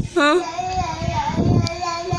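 Toddler crying, a long wavering wail that breaks off briefly near the start and then carries on, the drawn-out cry of a small child calling for his sleeping father.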